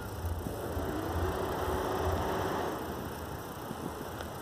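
A motor vehicle's engine running, with a low pulsing hum and a faint steady tone. It grows louder about a second in and eases off again near three seconds.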